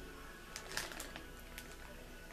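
Quiet background music, with a few short sniffs as a wax melt is held to the nose, clustered from about half a second to a second in.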